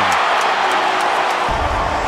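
Background music, with a deep bass coming in about one and a half seconds in, over a steady stadium crowd noise.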